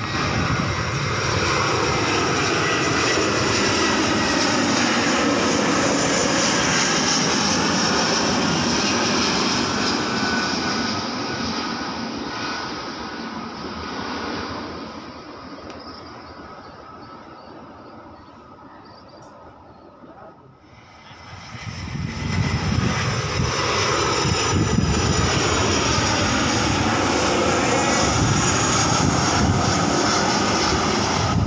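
Jet airliners passing low overhead on landing approach, one after another. The first one's engine noise is loud with a slowly shifting whine, then fades away over about ten seconds. About twenty seconds in, a second jet, an Airfast Boeing 737, comes in abruptly and stays loud and steady.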